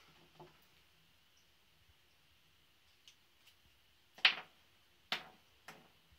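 A few sharp knocks of tools or objects being handled on a wooden workbench. Three stand out in the second half, about half a second to a second apart, over a faint steady room hum.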